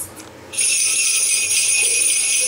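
Jingle bells start suddenly about half a second in and ring on steadily and loudly, with lower melody notes coming in beneath them near the end.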